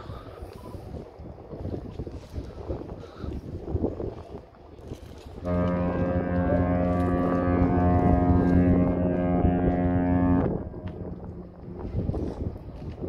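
A large ship's horn sounds one long, steady, deep blast of about five seconds, starting about halfway through. Wind buffets the microphone before and after it.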